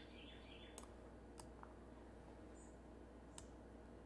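Near silence with three faint, sharp computer mouse clicks spread across the moment.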